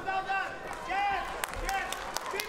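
Short, high-pitched shouted calls, three in two seconds, over the noise of a large hall, with a couple of sharp knocks in between.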